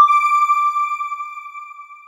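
A single bright electronic chime, struck once at one clear pitch with a few faint overtones, ringing out and fading away over about three seconds: the closing sting of a TV news channel's end card.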